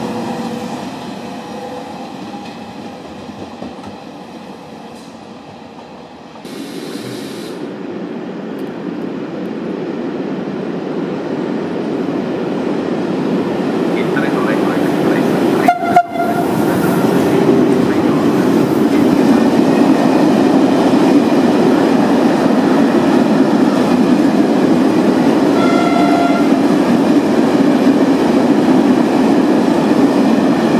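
Electric trains passing close by: a passenger train's rolling fades away, then an electric locomotive and a long freight train of grain hopper wagons approach and roll past, growing loud and steady over the rails. Brief horn notes sound at about 16 s and again about 26 s in.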